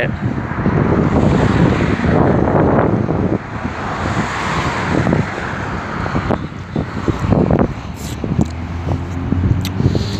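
Wind buffeting a phone's microphone: a loud, irregular rushing that rises and falls. A low steady hum joins near the end.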